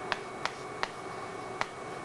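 Chalk on a blackboard while writing: four short, sharp clicks as the chalk strikes the board, unevenly spaced.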